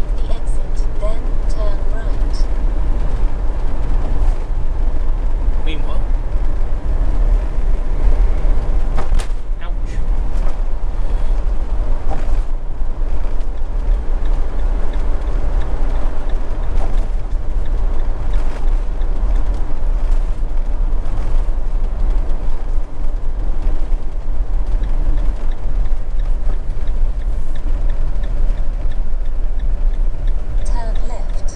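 Steady road and engine rumble heard inside a moving motorhome's cab at cruising speed, a heavy low drone with tyre and wind noise over it.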